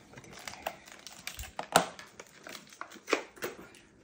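Handling noises at a kitchen counter: light rustling with scattered small clicks and knocks, the sharpest a little under two seconds in and another about three seconds in.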